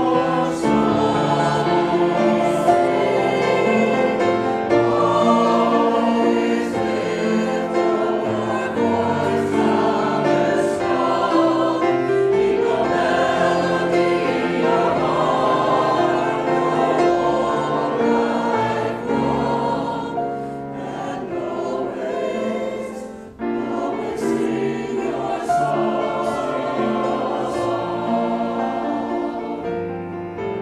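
Mixed choir of men's and women's voices singing together in sustained held notes, with a brief dip about two-thirds of the way through.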